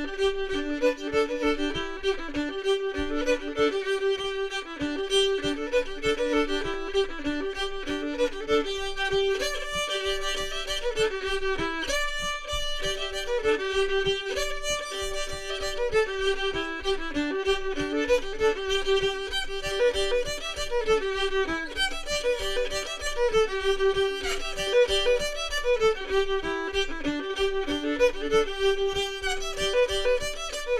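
Solo old-time fiddle tuned to cross G, playing a fast bowed tune with a steady drone string ringing under the melody.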